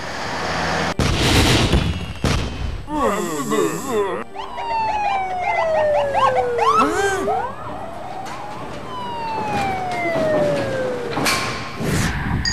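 Police sirens wailing and warbling, with long slow falling glides in pitch through the middle, after a brief rush of noise at the start.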